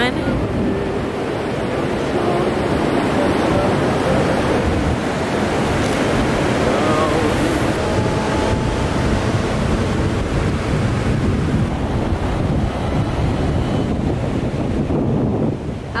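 Ocean surf washing onto the beach, with wind buffeting the microphone: a steady, dense rush of noise heaviest in the low end.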